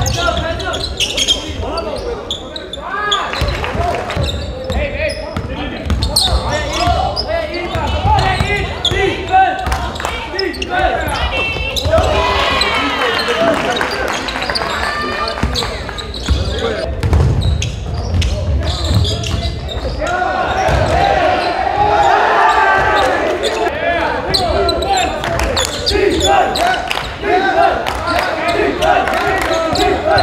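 Live basketball game sound in a large gym: a basketball repeatedly dribbled on the hardwood floor amid indistinct shouting voices of players and spectators.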